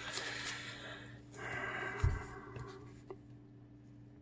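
Felt-tip marker pen writing, two stretches of scratchy strokes in the first two and a half seconds, with a short low thump about two seconds in.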